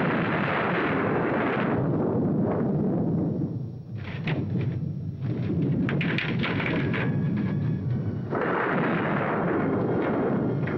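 Storm on an old film soundtrack: a steady rush of rain and wind with rumbling thunder. It eases about four seconds in, gives way to a run of sharp cracks, and the full rush returns near the end.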